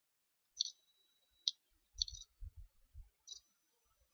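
Several faint, short clicks at irregular spacing, about six in all, two of them trailed by a thin high tone.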